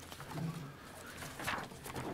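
A quiet pause in the meeting room: a brief, low hummed "mm" of a voice about half a second in, and a short rustle about a second and a half in.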